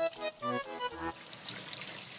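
Light background music of short, evenly spaced notes, about four a second, which stops about a second in; a soft steady hiss follows.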